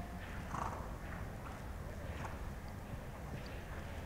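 A horse walking on a sand arena: faint, soft hoofbeats at uneven intervals over a steady low hum.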